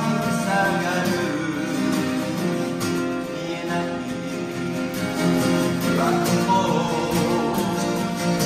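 Two acoustic guitars playing a song together, with a voice singing in places, first at the start and again about six seconds in.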